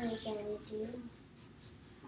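A brief hummed vocal sound in the first second, in a few short pieces, then faint scratching of crayons drawn over paper.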